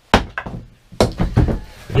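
Small hatchet chopping wood on a stone floor: two sharp thunks about a second apart, with lighter knocks between.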